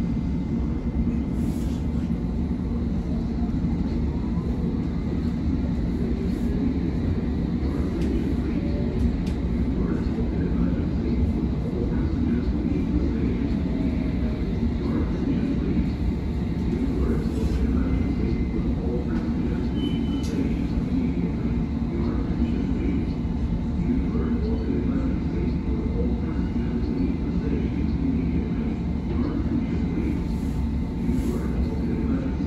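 London Underground S7 stock train running at speed, heard from inside the carriage: a steady rumble of wheels on rail, with a faint rising motor whine a few seconds in.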